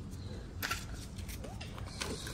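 A stack of paper banknotes handled by hand, with one sharp click a little over half a second in.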